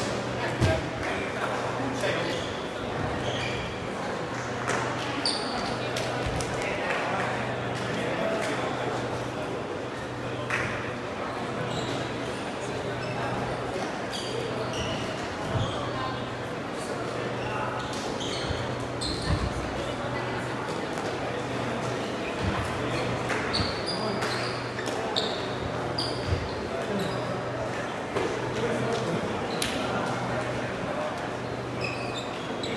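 Echoing sports-hall ambience: many voices talking and calling at once, with scattered short sharp knocks from play on the courts and a low steady hum underneath.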